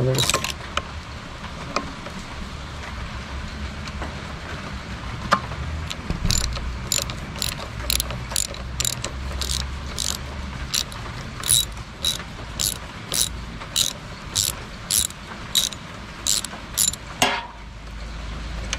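Socket ratchet clicking in a steady run, about two clicks a second through the second half, as the 10 mm bolts of a scooter's front brake caliper are backed out.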